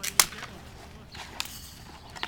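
A sharp crack of a hockey stick striking the ball on asphalt, followed about a second later by a fainter knock.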